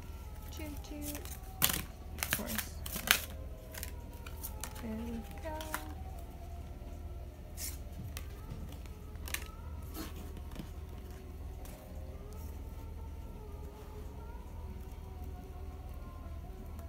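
Tarot cards being handled and dealt onto a wooden table: sharp snaps and slides of card stock, a quick cluster about two to three seconds in and a few more near the middle, over soft background music.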